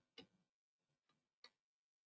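Faint computer keyboard keystrokes: a few separate key taps as numbers are typed into spreadsheet cells.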